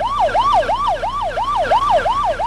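Emergency vehicle siren on a fast yelp, its pitch rising and falling about four times a second.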